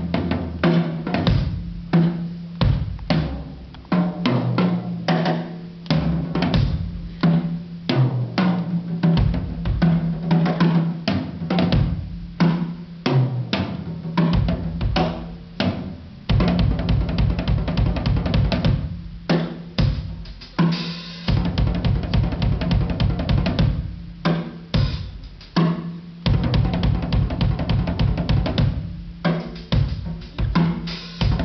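Drum kit solo: phrases of separate strokes on the drums, with bass drum under them. From about halfway the strokes turn into a fast, tightly packed run.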